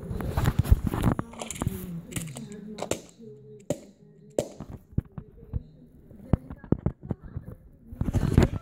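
A voice without clear words in the first few seconds, then a run of sharp, separate clicks and knocks from toys and the phone being handled.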